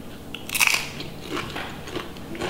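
A person biting into something crunchy and chewing it: a loud crisp crunch about half a second in, then a few smaller crunches.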